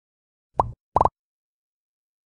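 Two short pop sound effects, each a quick upward-sliding bloop, about half a second and one second in.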